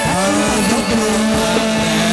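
Live chầu văn ritual music from a traditional Vietnamese ensemble: one long held note that rises at its start, over the rest of the ensemble.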